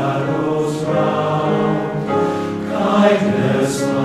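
Large men's chorus singing slow, sustained chords in a hall, with a short sibilant consonant near the end.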